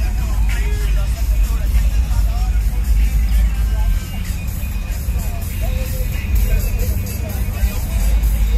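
Loud music with heavy bass from a custom pickup truck's sound system. The bass eases a little about four seconds in.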